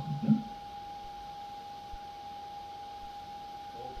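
A spoken word at the very start, then quiet room tone with a thin, steady high-pitched whine running throughout.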